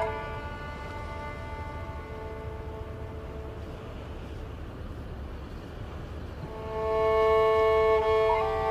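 Bowed strings playing long held notes. A held note drops away to faint, sustained tones over a low steady rumble, then a held chord swells back in loudly over the last second or two.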